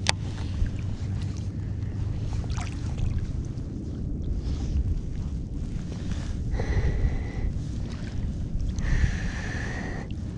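Wind buffeting the microphone in a steady low rumble, with moving river water. Twice, about two-thirds of the way in and near the end, a short high whine rises above it.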